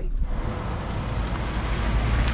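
A Ford Transit-based Class B camper van driving by on pavement: engine and tyre noise with wind buffeting the microphone, its low rumble strongest near the end.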